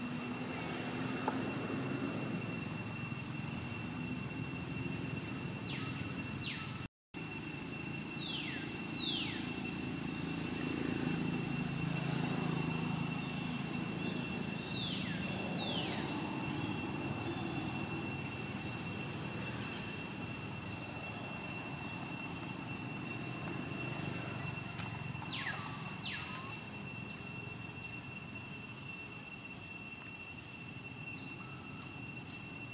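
Outdoor ambience: a steady low rumble and a constant high-pitched whine, with a few pairs of short, quickly falling calls. The sound cuts out for an instant about seven seconds in.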